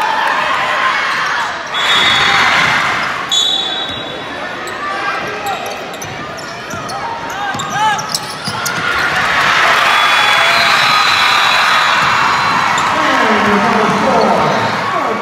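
Gymnasium basketball game: crowd noise and voices, with sneakers squeaking on the hardwood court and a ball bouncing. A loud burst of crowd noise comes about two seconds in, and from about the middle on the crowd cheers loudly and steadily.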